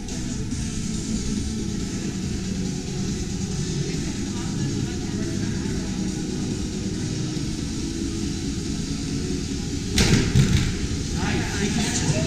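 Background music and voices in a gym hall, then a loud thump about ten seconds in as an athlete leaps onto a hanging ninja-course obstacle.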